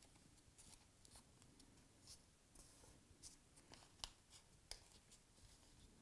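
Faint, scattered rustles and small crackles of a paper strip being folded and creased by hand, the clearest crackle about four seconds in.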